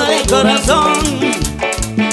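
Live cumbia band playing: a melody line over electric bass, congas and drum kit, with a shaker or scraper keeping a steady rattle on the beat.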